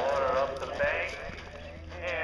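A horse galloping over turf, its hoofbeats faint, with a person's voice over it that is louder than the hoofbeats.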